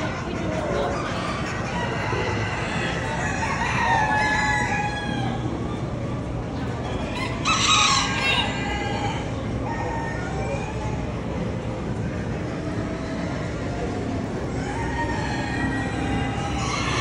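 Roosters crowing, with several calls in the first few seconds and the loudest crow about halfway through, over a steady background hubbub.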